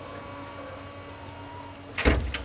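Steady low background hum with a few faint steady tones and no distinct event.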